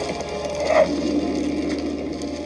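Ship's ropes and wooden timbers creaking and straining, a film sound effect, with a steady low tone underneath in the second half.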